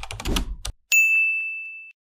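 Subscribe-button animation sound effects: a quick run of clicks and a low thump, then about a second in a single bright notification-bell ding that rings and fades away over about a second.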